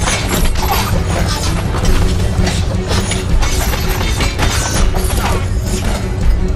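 Action-film fight soundtrack: music under a rapid run of strike, clash and smash sound effects, with things breaking.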